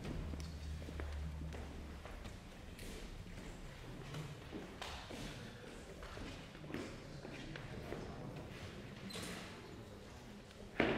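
Faint footsteps on a wooden floor and a few scattered soft knocks and shuffles as a performer walks to a grand piano and settles at it, over quiet room hum.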